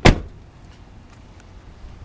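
A pickup truck door shutting: one sharp slam right at the start, with a brief low ring after it.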